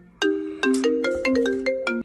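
Mobile phone ringtone playing a quick melody of short, bright struck notes that stops abruptly at the end.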